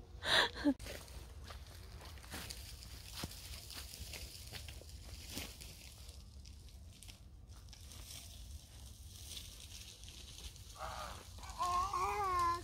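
Quiet outdoor background with a steady low rumble and a few faint scattered clicks. A brief voice sound comes just after the start, and another near the end.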